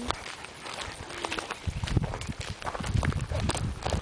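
Footsteps crunching on a gravel driveway, a steady run of small clicks, with two stretches of low rumble on the microphone around the middle.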